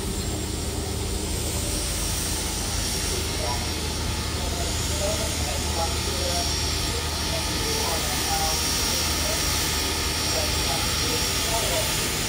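Steam locomotive 3526 standing with steam up, hissing steadily as it vents steam, over a steady low engine hum, with scattered voices of people on the platform.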